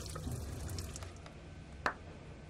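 Water running from a hose at a sink, rinsing the degreasing solution off a zinc etching plate, tailing off about a second in. A single sharp click comes near the end.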